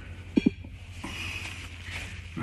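Paper towel rubbing and crinkling as a small black ring is wiped clean of dirt, with two quick clicks just under half a second in.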